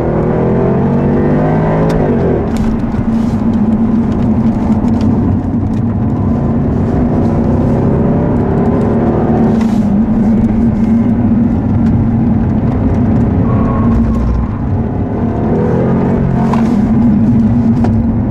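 The 2014 Jaguar XKR's supercharged 5.0-litre V8 heard from inside the cabin, driven hard on track: a steady loud drone, with the engine note climbing as it accelerates near the start, again around the middle and near the end.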